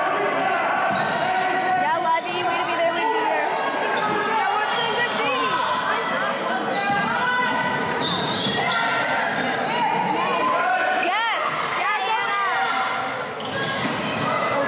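Live basketball game sounds in an echoing gymnasium: a ball bouncing on the hardwood court, sneakers squeaking sharply a few times as players cut and stop, and a constant mix of players' and spectators' voices.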